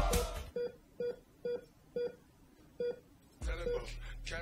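Five short electronic beeps of the same pitch, unevenly spaced about half a second apart, from a live-stream donation alert; music cuts off at the start and sound comes back near the end.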